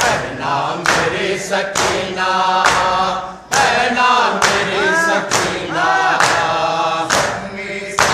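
A group of men chanting a noha, a Shia mourning lament, in unison. Their chest-beating (matam) gives a sharp slap about once a second, keeping a steady beat under the chant.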